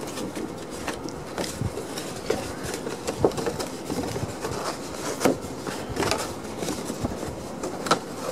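Sheets of card and patterned paper rustling and tapping as they are handled and laid down on a pile, a few short sharp taps over a steady background hiss.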